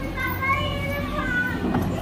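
A child's high-pitched voice talking, over a low background hum.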